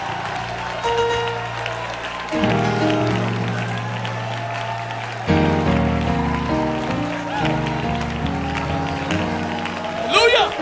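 Church worship band playing held chords over a bass line that changes note about two seconds in and again about five seconds in, then moves in short steps. The congregation's clapping and voices sound under it.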